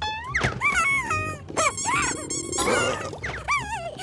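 Cartoon ant characters chattering in high, squeaky gibberish voices: many short calls that swoop up and down in pitch, with a short burst of hissing noise about two-thirds through, over background music.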